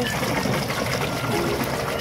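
Water sloshing and splashing steadily as a toy elephant figure is swished and scrubbed through foamy water in a tub.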